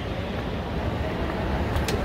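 Kone TravelMaster 110 escalator running: a steady low mechanical rumble, with one brief click near the end.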